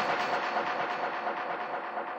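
The tail of an electronic intro theme: a dense, rapidly pulsing rattle-like texture with its bass dropped out, slowly fading down.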